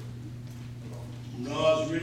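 A short pause holding only a steady low electrical hum from the sound system, then a man's voice starting through the microphone about one and a half seconds in.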